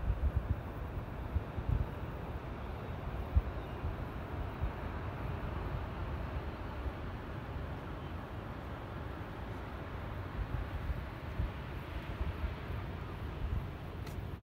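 Wind gusting on the phone's microphone in irregular low rumbles, over a steady rush of sea surf breaking against the shore below the cliffs.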